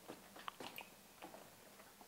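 Near silence: room tone with a few faint small clicks.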